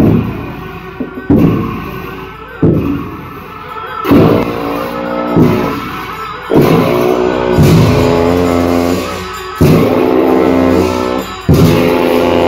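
A pair of long Tibetan Buddhist ritual horns (dungchen) blown in long, low, droning notes from about four seconds in, each note starting with a loud blast. Before them come several sharp percussion strikes.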